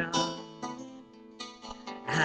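Guitar strummed a few times, its chords ringing on between the sung lines of the song.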